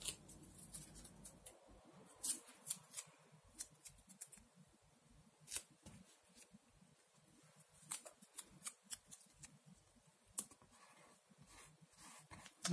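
Faint handling of masking tape and thin plastic stencil sheets as pieces of tape are pressed down onto the stencils: scattered light crackles and clicks, irregular and spread out.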